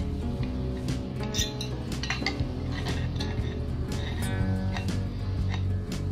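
Ordinary unbranded aviation snips cutting galvanised sheet-steel channel, giving irregular sharp metallic clicks and crunches as the blades bite. The snips cut stiffly and slowly into the metal. Background music plays throughout.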